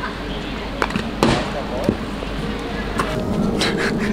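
A putter strikes a mini-golf ball with one sharp click about a second in, followed by a few lighter clicks later on, over background chatter.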